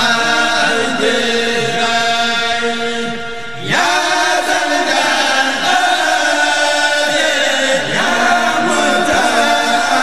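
Group of male voices chanting a Mourid khassida (Sufi devotional poem) in chorus, in long held notes; after a short dip a new phrase comes in about four seconds in, and another near eight seconds.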